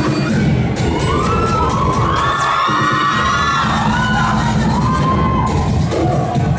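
An audience screaming and cheering in high-pitched shrieks over loud dance-pop music.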